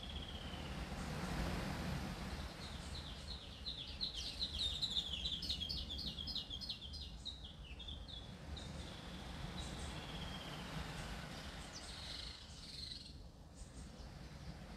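A bird singing: a quick run of high chirps about three to eight seconds in, with a few thin whistled notes near the start and near the end, over a steady low hum.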